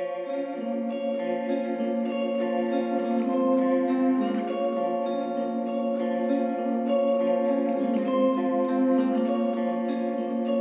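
Instrumental hip-hop beat in a stripped-down break: a plucked guitar loop with echo and chorus effects plays alone, with no drums and no bass.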